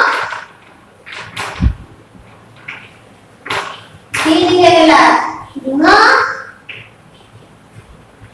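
Children's voices speaking in short phrases, the loudest about halfway through, with a brief low thud about one and a half seconds in.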